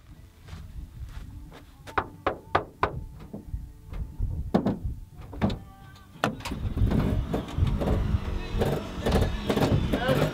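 Footsteps in riding boots on dirt, a string of separate sharp steps, then a van's rear double doors being unlatched and swung open with clunks and rattles, louder from about six seconds in.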